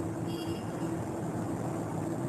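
Steady low background hum, with one brief faint squeak of a marker on a whiteboard about a third of a second in.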